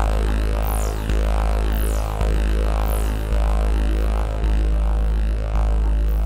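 Minimal electronic techno: a deep droning synth bass that restarts about once a second, with quick falling sweeps high up.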